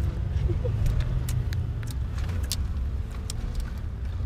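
Steady low rumble of a car heard from inside its cabin, with a few faint light clicks scattered through it.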